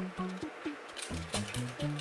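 Background music with a steady bass line. From about a second in, quick short hissing spritzes of a hand spray bottle misting water onto the face.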